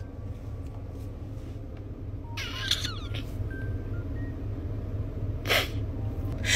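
Low steady hum inside a car, with a short wavering sound about two and a half seconds in and a brief rustle of the phone being handled just before the end.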